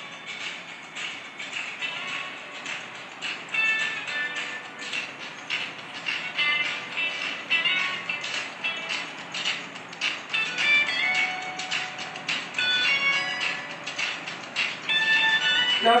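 Background music: a light instrumental track with short high notes and a steady beat.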